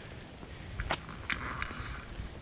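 Footsteps of a person walking on a wet concrete path, with a few sharp clicks a second or so in, over a low steady rumble of wind or camera handling.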